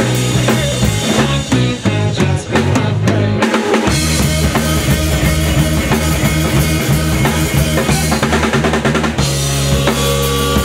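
Live rock band playing loudly: electric guitar, bass guitar and drum kit, with a steady drum beat. The low end drops out briefly about three and a half seconds in, then the full band comes back.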